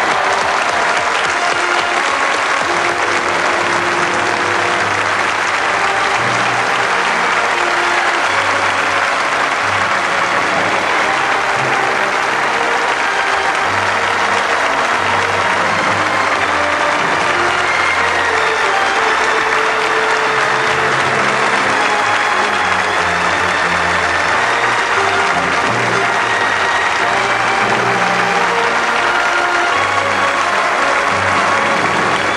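Studio audience applauding steadily over music, the programme's closing theme.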